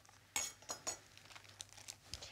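Plastic film being peeled back from a plastic meat tray: a sharp crackle about a third of a second in, then faint scattered crinkles and ticks.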